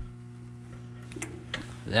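A few faint clicks from the fuel-injector control linkage of a shut-down 16-cylinder diesel engine as its lever is moved by hand, over a steady low hum.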